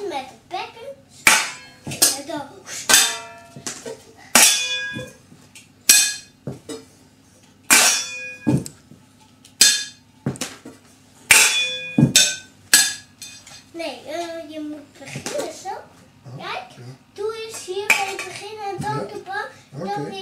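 Stainless steel cooking pots and lids struck by a child as a makeshift drum kit: a dozen or so ringing metallic clangs at uneven intervals, spaced about a second apart. In the last few seconds the strikes give way to a child's voice.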